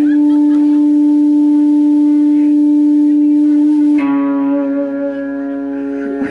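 Electric guitar holding a single steady, ringing note, which gives way to a new, slightly lower and fuller note about four seconds in.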